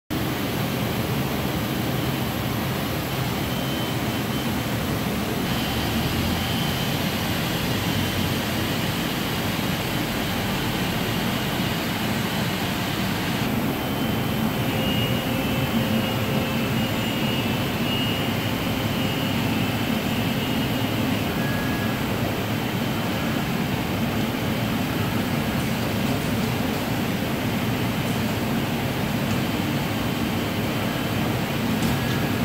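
HP Scitex 15500 corrugated-board digital printer running: a steady whir of fans and moving air, with faint high whines coming and going.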